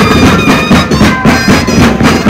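Moseñada ensemble playing: a massed group of moseño flutes with a reedy, buzzing tone carries the tune over a steady beat of bass drums and snare drums.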